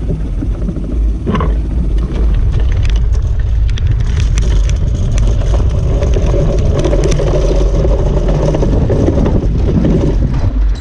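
Aerotow launch of a hang glider: wind rushing over the microphone and the launch cart rattling over rough dirt as the glider is pulled up to takeoff speed, with the tow plane's engine running at full power ahead. The noise swells about two seconds in as the roll begins.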